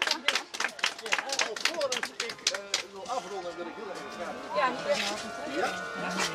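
A small crowd applauding, the clapping thinning out and stopping about halfway through, after which people talk among themselves.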